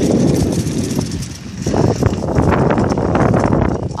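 Wind buffeting a handheld phone's microphone while riding a bicycle: a loud, rough rumble with many small jolts, dipping briefly just over a second in.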